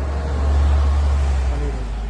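City bus passing close by in street traffic, its engine and tyre noise swelling to a peak about half a second in and easing off, over a steady deep rumble.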